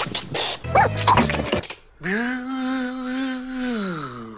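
Mouth-made beatbox clicks for the first half-second, then a short jumble of vocal noises. About two seconds in, a voice holds one long note for nearly two seconds, bending up as it starts and sliding down as it ends.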